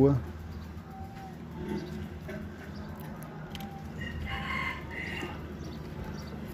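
A bird calls once for about a second, about four seconds in, after a shorter call near the start, over a steady low hum.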